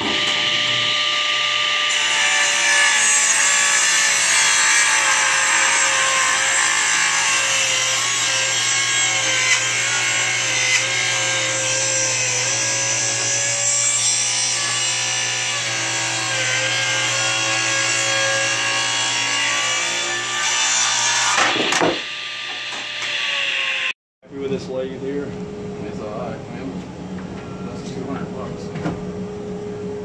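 Table saw running and ripping through a thick wooden block. The steady sound wavers slightly under load and stops about 22 seconds in. A quieter steady hum follows in the last few seconds.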